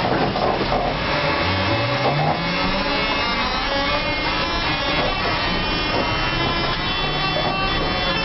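Škoda 9TrHT trolleybus's electric traction motor whining as the trolleybus pulls away. The whine rises in pitch over the first few seconds, then holds steady, with thin high whining tones above it.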